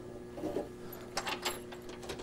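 A few faint, short metallic clicks and scrapes of wing nuts being turned by hand on a jukebox's rear cover, over a faint steady hum.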